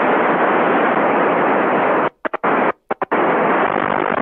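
Two-metre radio receiver hissing with static, its squelch open and no voice answering the call to the ISS. The hiss cuts out in a few short breaks a little past the middle.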